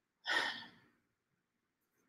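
A woman's short sigh, one audible breath out, about a quarter second in.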